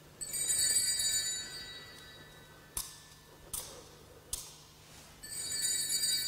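Altar bells rung at the blessing with the Blessed Sacrament at Benediction: a shimmering shaken peal of several bells lasting over a second at the start, three single strokes about 0.8 s apart in the middle, and another shaken peal beginning near the end.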